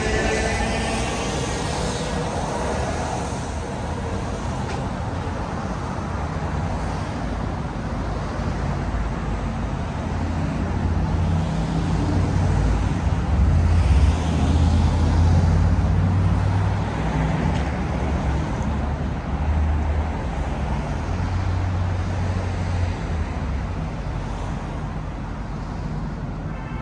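City street traffic: cars driving past on the road beside the sidewalk. A vehicle's whine rises in pitch in the first few seconds, and a low engine rumble grows louder in the middle before easing off.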